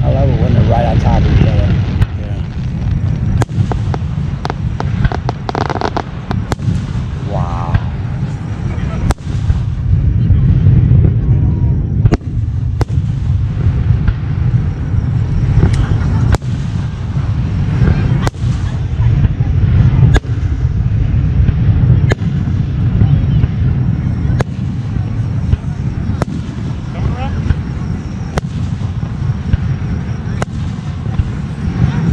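Aerial fireworks shells bursting one after another, with sharp bangs about every second or two over a steady low rumble.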